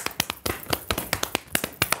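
A quick, uneven run of sharp hand claps and slaps, imitating the slapping of an anti-cellulite massage.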